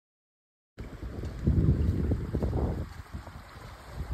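Dead silence, then a little under a second in, wind buffeting the microphone in low gusty rumbles, strongest for a second or so before easing, over a small rocky creek running.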